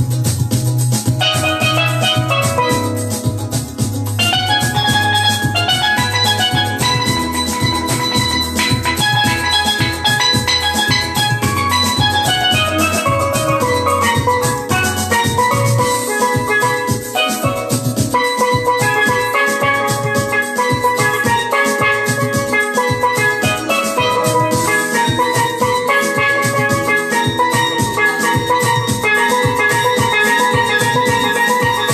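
Steel pan played in quick runs of ringing notes over a drum beat. A sustained low bass sound under it drops out about halfway through.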